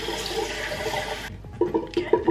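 Water running from a bathroom sink tap, rinsing off face cleanser, then shut off a little past a second in.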